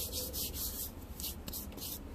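Fingers rubbing fine powder together and letting it sift down into a bowl of powder. The result is a quick series of soft, gritty hisses, about three a second.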